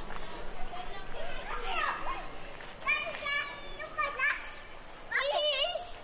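Young children's high-pitched voices calling out and chattering in several short calls that bend up and down in pitch.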